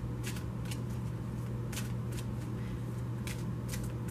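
A steady low hum with soft, irregular clicks and rustles scattered through it, several to a second at most.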